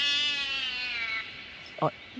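A single high-pitched, drawn-out cry that falls slowly in pitch and fades away over about a second and a half.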